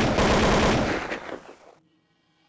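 A loud, dense rattling burst that starts abruptly and dies away within about two seconds.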